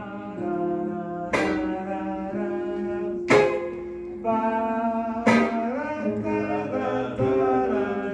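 Live ensemble music: guitars playing under a wordless sung melody, with a sharp struck chord about every two seconds.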